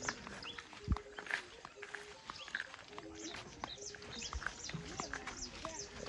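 Birds chirping all around in many short calls, mostly quick falling chirps, with the soft steps of someone walking through tall grass.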